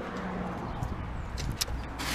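Steady low background noise with a faint hum, and a few light clicks a little past the middle.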